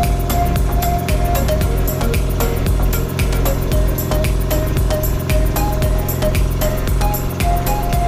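Background music with a steady beat and a short repeating melody.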